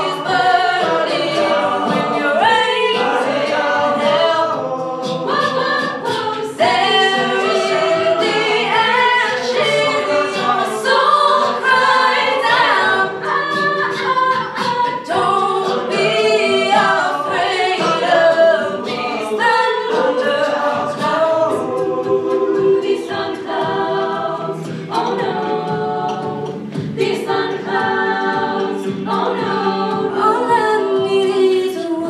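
A mixed-voice a cappella group singing a pop song live on microphones, with no instruments. A lead voice moves over held backing chords.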